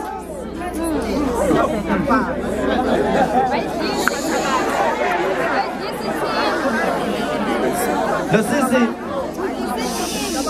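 Speech: a man talking with several voices from a crowd overlapping in chatter around him.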